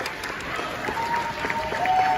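Audience applauding, with a few long, steady held notes sounding over the clapping from about a second in.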